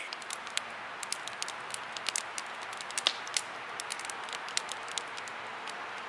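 Wood campfire crackling: a steady hiss with frequent sharp, irregular pops and snaps as a log burns.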